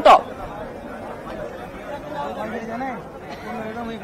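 A crowd of people talking over one another in a steady, fairly quiet murmur, with no single voice standing out. A louder nearby voice cuts off right at the start.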